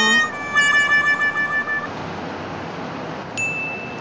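Rain falling steadily: an even hiss all through. Over it in the first half a high held tone sounds and stops at under two seconds, and near the end a short steady high beep sounds.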